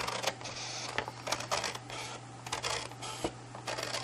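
Scissors snipping through white cardstock in a quick run of short, irregular cuts, trimming away a side flap.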